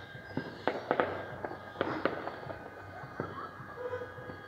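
Fireworks going off: a quick run of sharp bangs and pops in the first two seconds or so, then a lull with only scattered pops.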